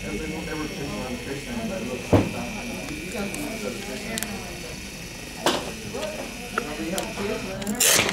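Defibrillator monitor's built-in strip printer running as it feeds out an ECG rhythm strip: a steady motor whine with a few clicks. The whine stops just before a sharp knock near the end.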